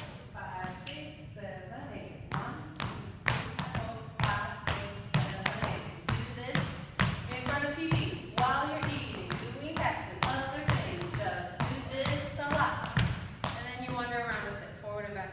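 Shoes stepping, kicking and tapping on a wooden studio floor in a fast rhythmic Lindy Hop eight-count footwork pattern, a few sharp steps a second. A woman's voice vocalizes along over the steps.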